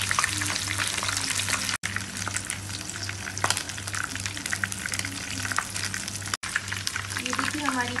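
Chicken leg pieces frying in hot oil in a pan on medium flame: a dense, crackling sizzle over a steady low hum, cutting out briefly twice.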